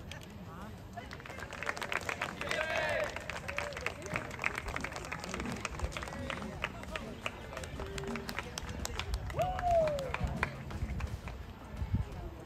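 Distant chatter of players and adults on an open sports field, with scattered short claps or clicks and one voice calling out near the end.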